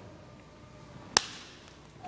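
A large consecrated communion wafer being snapped by hand at the fraction: a single sharp crack a little over a second in, with a brief ring-out in the church, over quiet room tone.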